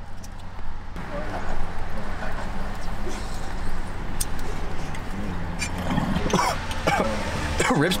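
Glass water bong bubbling as a hit is drawn through it for several seconds, over a steady low hum; it rips smoothly. A man's voice comes in near the end.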